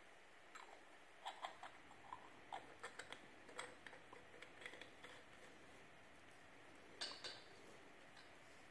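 Faint, scattered light clicks and ticks of a brass hex fitting being handled and screwed by hand onto the threaded nipple of a new anode rod, with a slightly louder pair of clicks about seven seconds in.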